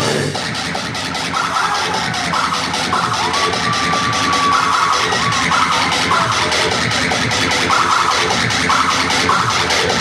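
Metal band playing live: distorted guitars over fast, dense drumming, with short high-pitched guitar notes repeating over the top, one held for over a second about three seconds in.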